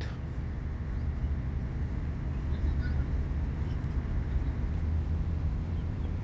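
Steady low outdoor background rumble, with faint distant voices about halfway through.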